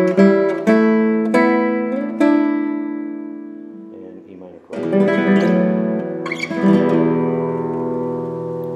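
Nylon-string classical guitar played fingerstyle in E minor. A short run of plucked single notes winds down the piece, then one note is left to ring and fade. After a brief near-pause a chord sounds, and a few more notes and a final chord are left ringing.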